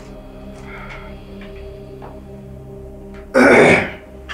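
Soft, sustained background music, then near the end a man gives one loud throat-clearing cough into his fist.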